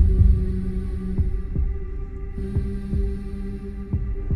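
Soundtrack intro: a steady low drone with soft thuds in a heartbeat-like rhythm.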